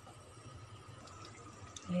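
Thick tomato spaghetti sauce bubbling faintly in a frying pan, with a few soft plops: it has just come to the boil. A faint steady hum runs underneath.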